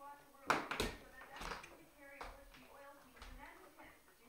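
Quiet talking in the background, with a cluster of sharp knocks and thumps about half a second in and a few softer thumps after.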